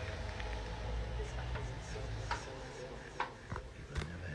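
Muffled low bass from a beat played on a small sampler, heard through the room, with a few sharp clicks about halfway through and near the end.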